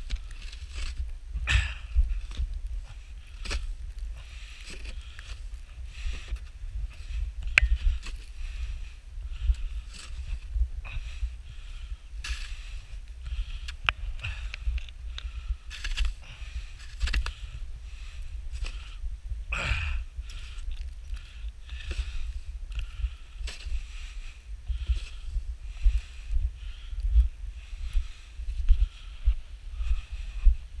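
A snow shovel scraping and digging in fluffy snow, with crunching footsteps, in irregular scrapes and knocks, one heavier one about two-thirds of the way in. Wind rumbles on the microphone underneath.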